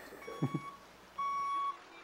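A truck's backup-alarm-style warning beeper sounding, a steady high beep about half a second long repeating about once a second. The first beep is faint and the second, a little past the middle, much louder. A brief chuckle comes about half a second in.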